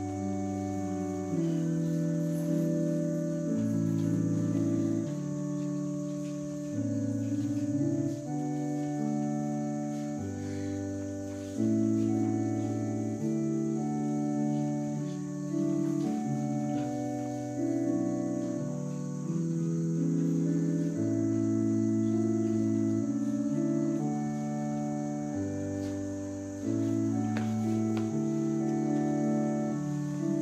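Slow, hymn-like organ music played from a recording, in sustained chords that change about every one to two seconds.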